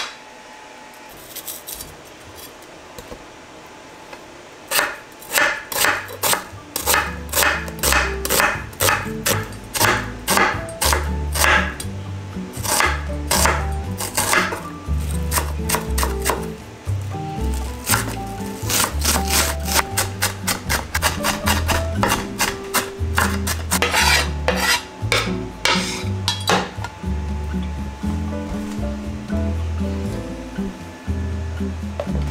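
Kitchen knife chopping onion on a wooden cutting board, a fast, irregular run of sharp knocks that starts about five seconds in, with a faint rubbing of onion being peeled before it. Background music with a steady bass line plays under the chopping.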